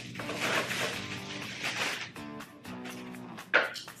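Thin plastic wrap crinkling as it is pulled off a bamboo bath tray, with a short louder rustle near the end. Soft background music with held notes plays underneath.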